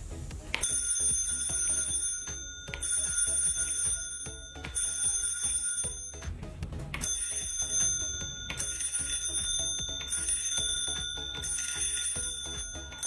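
Homemade electric bell: a chrome bicycle-bell dome struck rapidly by a motor-spun striker from old RC car parts, ringing in about six bursts of one to two seconds with short breaks between, each burst set off by a press of the wireless doorbell button.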